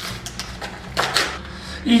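A padded paper mailing envelope being torn open by hand: three short ripping, crinkling tears within about the first second and a half, as the envelope finally gives way.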